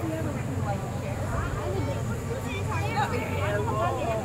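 Background chatter of several onlookers' voices, some high-pitched like children's, overlapping over a steady low hum.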